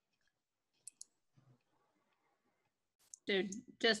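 Near silence on a video-call line, broken by two quick faint clicks about a second in. A man's voice starts speaking near the end.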